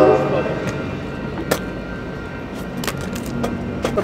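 A train horn ends just after the start, followed by a steady low hum of street traffic with scattered sharp clicks and knocks.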